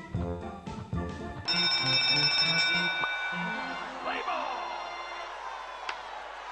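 Computer slot-game sound effects: short organ-style music notes with a few clicks as the reels land. About a second and a half in, a bright ringing bell jingle starts suddenly and slowly fades, with a sweeping sound about four seconds in. The jingle marks the bonus feature being triggered.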